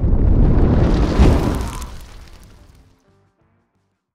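Logo-intro music sting: a deep, booming swell with a sharp hit about a second in, then fading away to silence about three seconds in.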